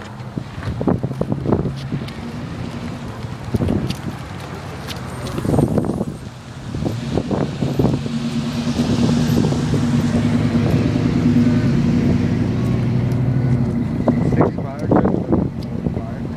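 Square-body Chevrolet pickup's engine running as the truck rolls slowly past close by, a low steady hum from about seven seconds in that holds for several seconds and drops away near the end. People's voices are heard faintly around it.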